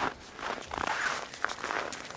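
Footsteps on packed snow, walking at an uneven pace.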